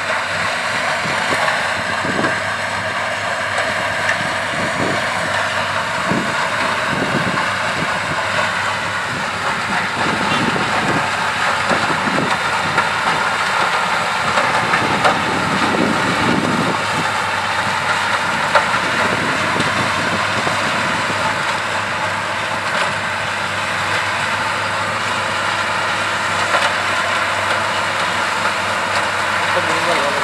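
Shaktimaan sugarcane harvester at work: its diesel engine runs steadily under load with the chopping and elevator machinery, and irregular knocks as cut cane is thrown into the tractor trailer alongside, the tractor's engine running with it.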